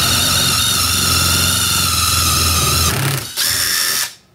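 Uaoaii cordless brushless impact wrench with a drill-chuck adapter, running a twist bit into wood on its lowest setting, its motor whining steadily. It eases off briefly about three seconds in, runs again, then stops just before the end.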